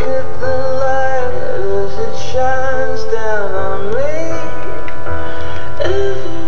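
A pop song: a high woman's voice sings a slow melody of long held and gliding notes over a steady backing track.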